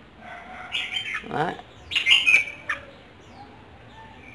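Caged red-whiskered bulbul giving two short calls, one about a second in and a stronger one about two seconds in.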